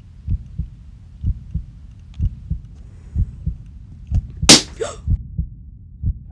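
A slow heartbeat sound effect, paired low thumps about once a second, with a sharp loud bang of a rubber balloon bursting about four and a half seconds in.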